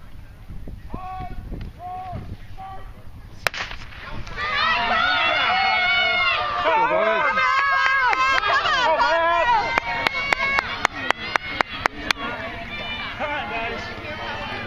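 A starting pistol fires once about three and a half seconds in, starting the cross-country race, and spectators at once break into loud, overlapping cheering and shouting. Near the end comes a quick run of about ten sharp clacks, roughly five a second.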